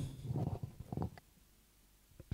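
Faint low rumble and murmur with a couple of soft clicks, fading to near silence after about a second.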